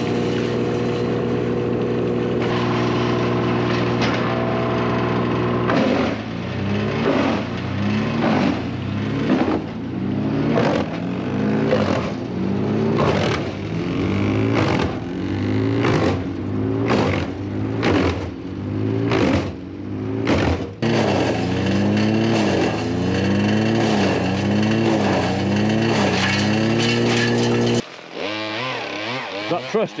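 Wood chipper engine running at steady speed. Then a log is fed in, and the engine pitch dips and recovers about once a second, with sharp cracks as the wood is chipped. The engine is loading up each time the blades bite.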